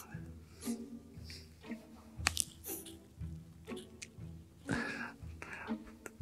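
Quiet background music with steady low notes, with a few faint short mouth and breath sounds scattered through it.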